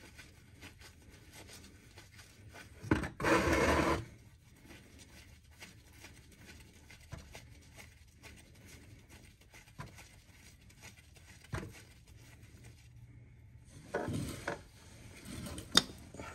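A transmission drain plug being threaded back in by hand: faint small metal scrapes and clicks, with a louder rustle about three seconds in and again near the end, and a sharp click just before the end.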